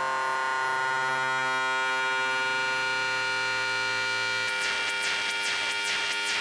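Doepfer A-100 analog modular synthesizer patch sounding a dense, sustained cluster of steady tones. About four and a half seconds in, the low tone drops out and a rhythmic pattern of high swooping sweeps starts, about two a second.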